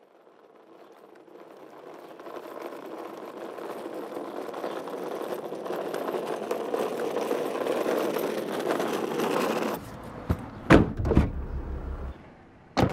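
A steady rushing noise fades in and swells for about ten seconds, then cuts off suddenly. It gives way to the low rumble of a car's cabin, with a few sharp thumps near the end.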